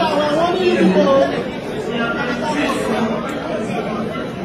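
Indistinct talking: several voices chattering at once.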